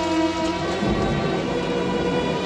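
Steady rain with a low rumble of thunder about a second in, under a film score of long held notes.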